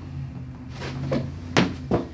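Joints cracking under a chiropractic neck adjustment: a couple of short, sharp pops near the end, over a faint low hum.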